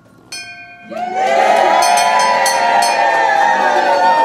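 A wall-mounted brass bell rung by its rope pull, ringing the hospital's end-of-treatment bell. It is struck once with a clear ringing tone, then a crowd starts cheering and shouting about a second in while the bell is struck again several more times.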